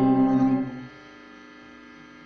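Guitar's final chord ringing out at the end of a song: loud held notes that drop away sharply about a second in, then a soft steady ring to the end.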